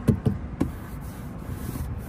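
A hand knocking and tapping on a car's rear door trim panel, a few short knocks in the first half-second or so, then a steady hiss.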